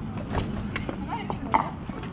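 A few irregular sharp clicks of footsteps on a concrete walkway, with indistinct voices faintly in the background.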